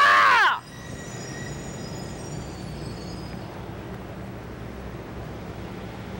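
A woman's loud, high-pitched shout, cut off about half a second in, followed by a steady low background rumble of street traffic.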